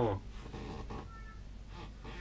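A man's drawn-out "oh", in a low pitched voice, ending a fraction of a second in, followed by faint quiet sounds.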